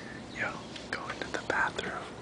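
A person whispering a few short phrases.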